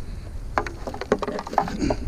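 Black plastic trash bag rustling and crinkling as it is handled, a quick irregular run of crackles starting about half a second in, over low wind rumble on the microphone.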